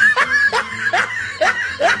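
A person laughing in quick, repeated short bursts.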